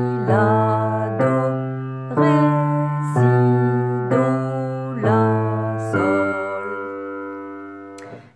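Upright piano played with the left hand alone: single low notes struck about once a second in a slow exercise. The last note, about six seconds in, is held and dies away.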